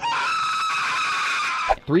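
A man screaming in terror: one high, piercing scream held for nearly two seconds, then cut off sharply.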